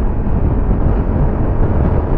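Moto Guzzi V100 Mandello's transverse V-twin engine running as the motorcycle accelerates at highway speed, mixed with heavy wind rush on the microphone.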